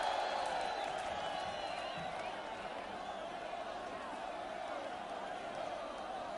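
Large crowd cheering and whistling in a steady roar that slowly dies down.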